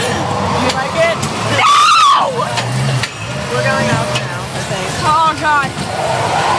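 A girl's voice calling out and laughing, with one long cry that rises and falls about two seconds in, over the steady noise of a Zipper carnival ride.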